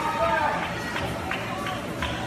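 People's voices making drawn-out calls, with music, and a few short knocks.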